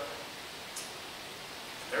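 Steady room hiss between a man's sentences, with one short faint hiss about three-quarters of a second in; his voice comes back right at the end.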